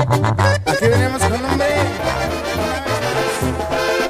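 Instrumental break in a norteño corrido: accordion playing the melody over a steady bass line.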